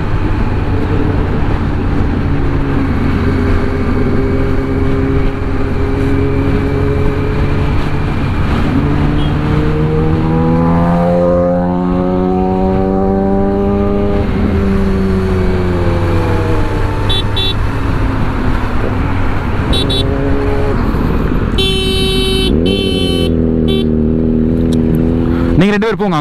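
Kawasaki inline-four motorcycle engine running under way in traffic; its revs climb about ten seconds in and ease off a few seconds later. Several short horn toots near the end.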